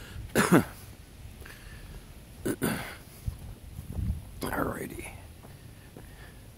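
A man's short, wordless vocal sounds, three brief mutters, with a few soft footsteps on pavement.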